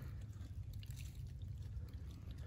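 Faint wet sounds of a knife slicing open a freshly killed deer's heart, with a few soft ticks over a low steady rumble.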